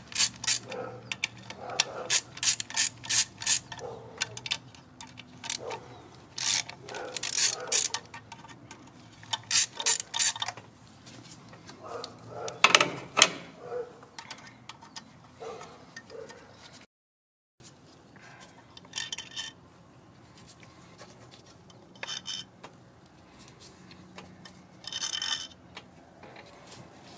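Hand ratchet clicking in short runs of rapid clicks, with pauses between, as a socket backs out the external Torx E6 fuel-rail bolts on a BMW B58 engine.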